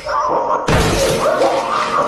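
A sudden loud crash-like noise bursts in a little under a second in, with pitched sound, music or a voice, carrying on beneath it.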